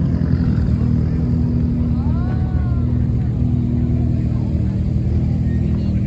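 Several rally car engines idling together, a steady low engine drone with no revving. A faint tone rises and falls briefly about two seconds in.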